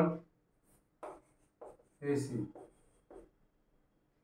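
Chalk writing on a blackboard: a few short, separate scratching strokes as symbols are chalked up.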